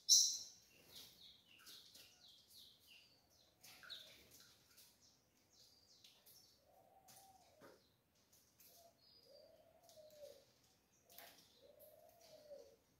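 Caged tico-tico (rufous-collared sparrows) giving short high chirps and call notes, the sharpest and loudest right at the start. In the second half there are three low, arched cooing calls, each about a second long.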